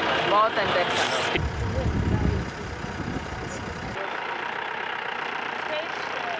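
Safari jeep engine running, with a passenger's voice briefly at the start. The rumble starts abruptly about a second and a half in and cuts off sharply at about four seconds, giving way to a quieter, steady hiss.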